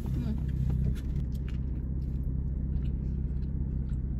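Steady low rumble of a car engine idling, heard from inside the cabin, with faint rustling of plastic food containers and chewing.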